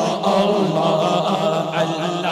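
Male voices chanting a naat, an Islamic devotional poem, without instruments: one continuous melodic line, with several voices overlapping.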